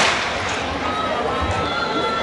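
A starter's pistol shot fires once right at the start, its echo fading within a fraction of a second, followed by steady crowd chatter.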